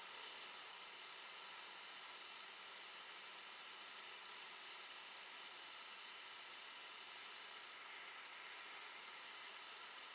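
Steady hiss of compressed shop air rushing through an Airlift venturi vacuum bleeder as it works the cooling system toward its test level.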